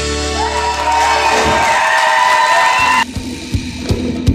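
Live Celtic band holding its final chord, accordion tones sustained over a bass note, the whole chord cutting off suddenly about three seconds in. A few drum hits follow.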